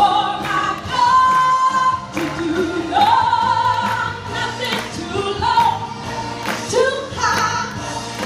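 Live gospel song: a singer holding long notes over backing music, with the congregation clapping along in sharp repeated claps.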